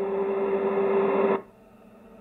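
Spirit box putting out radio static with a steady hum. It cuts off suddenly about one and a half seconds in.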